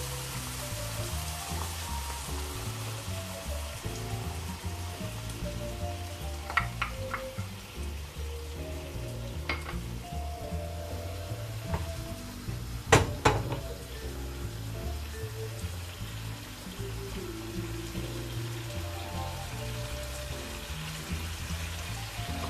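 Tomato sauce hitting a frying pan of meatballs browning in hot oil, sizzling hard at first and dying down over the first few seconds. The sauce is then stirred with a wooden spoon, with a few knocks against the pan, the sharpest about 13 seconds in. Background music throughout.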